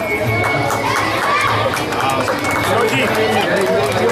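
A crowd of people talking over one another, with music playing in the background.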